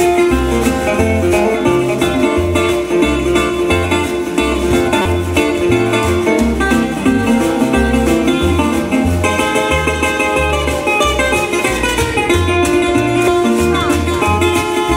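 Live acoustic blues instrumental: plucked upright double bass sounding steady low notes about twice a second, a guitar playing a lead line, and a thimble-struck washboard adding a scratchy rhythm.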